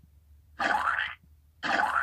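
Two short, matching sound effects for cupcakes being thrown, each about half a second long with a rising pitch, about a second apart.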